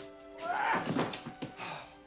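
Film soundtrack music with a few steady held notes, and a thunk with a short burst of noise a little over half a second in.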